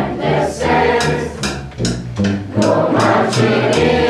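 A student wind orchestra playing, with low sustained notes under a regular beat of sharp percussive strokes, about four a second.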